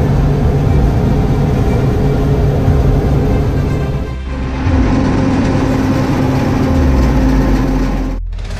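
John Deere 975 combine harvester running steadily under load while cutting barley, heard from inside the cab as a constant engine and machinery drone, with a brief dip about halfway.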